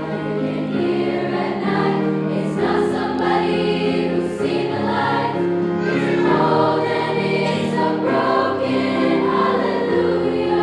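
A choir of girls singing together with grand piano accompaniment, holding long sustained notes.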